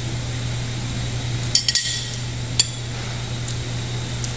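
Metal cutlery clinking against a plate: a quick cluster of sharp clinks about one and a half seconds in and a single clink about a second later, over a steady low hum.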